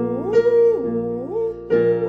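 A vocal warm-up: a voice sings a vocalise, sliding up and down between held notes over sustained accompaniment chords that are struck anew twice.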